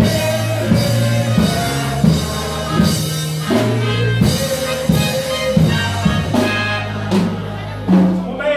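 Live church band of electric keyboard and drum kit playing a hymn with a steady beat, with voices singing held notes over it.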